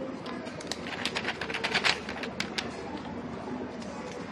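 Thin plastic wrapping crinkling in the hands: a quick run of sharp crackles starting about half a second in, loudest just before two seconds, then dying away.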